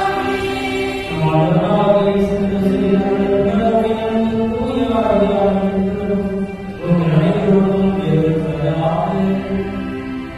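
Voices singing a slow, chant-like liturgical hymn in long held notes, with short breaths between phrases about a second in and again near seven seconds.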